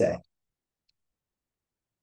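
Near silence: a pause in a man's speech, right after his last word ends in the first moment, with the background cut to nothing.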